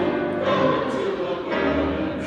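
Mixed church choir singing a sacred anthem, men's and women's voices together in held chords.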